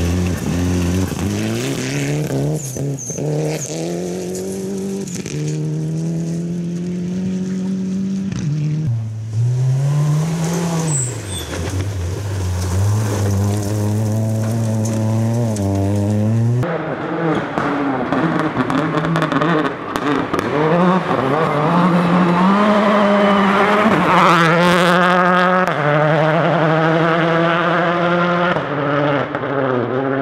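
Rally car engines at full throttle, each climbing in pitch through the gears, with a sudden drop at every gear change. There are several separate passes, the loudest in the second half.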